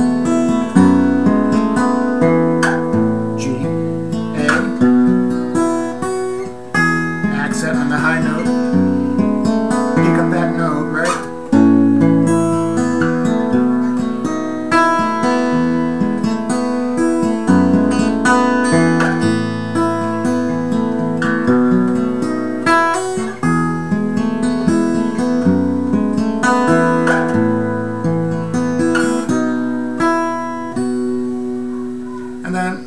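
Acoustic guitar in DADGAD tuning with a capo, played through a repeating chord progression at a fairly quick pace, the chords changing every second or two and the open strings left ringing.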